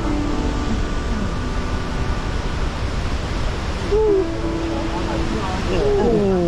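Steady wind rumble on the microphone while walking down a forest trail. About four seconds in comes a person's short hooting 'hoo' call, held for over a second, and near the end a voice cries out with a falling pitch.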